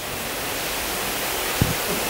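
A steady, even hiss, with a few faint low knocks near the end.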